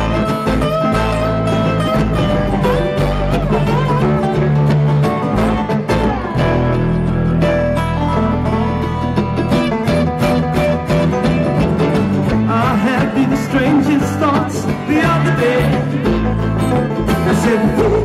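Live bluegrass string band playing an instrumental passage between sung verses: upright bass, acoustic guitar, mandolin and a lap-steel dobro, with sliding steel notes near the start.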